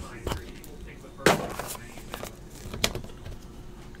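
Handling noise from trading cards and plastic card holders being moved and set down on a table: a few sharp clicks and knocks, the loudest about a second in.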